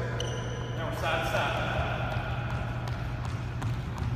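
Light thuds of feet hopping on a hardwood gym floor, over a steady low hum, with a brief high squeak near the start.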